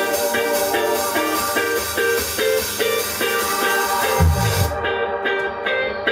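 Live indie rock band playing a song's intro: a quick repeating figure of short, bright notes on keyboard and guitar, with a low bass slide downward about four seconds in.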